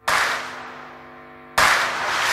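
Editing sound effect: a sharp crack-like hit that rings out and fades, then a second hit about one and a half seconds in.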